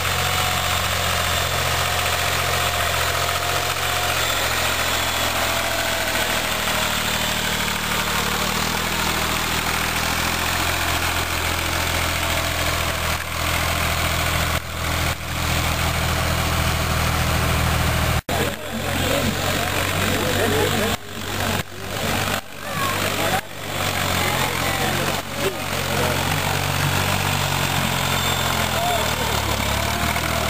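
A small tractor's engine running steadily as the tractor drives through mud. After a break about 18 seconds in, crowd chatter is heard over the engine.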